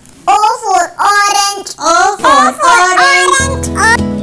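A child's high voice singing a short alphabet phrase, with plucked guitar music coming in near the end.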